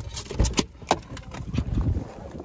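A run of sharp clicks and rattles from a car key in hand and a Chevrolet sedan's interior door handle being pulled to open the door.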